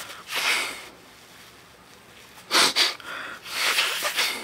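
Three short, forceful breaths through the nose, the one in the middle the loudest: a patient clearing a congested nose on request.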